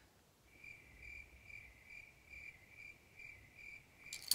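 Faint, evenly repeating high-pitched chirp, about two to three chirps a second, starting about half a second in, over a quiet room.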